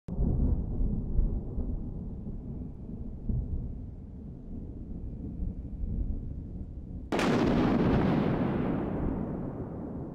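A low rumble, then a sudden loud boom about seven seconds in that dies away slowly over a few seconds.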